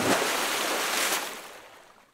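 A hissing, static-like noise sound effect for a glitch title transition: it starts suddenly, holds steady for about a second, then fades out.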